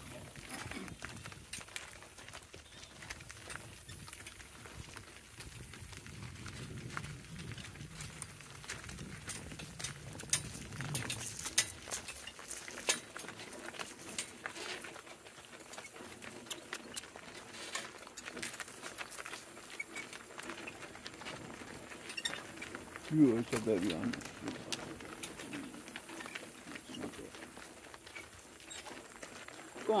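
Two-donkey cart rolling along a gravel road: a steady run of small crunches and clicks from hooves and wheels on gravel and the rattle of harness and trace chain. A man calls 'Go' near the end.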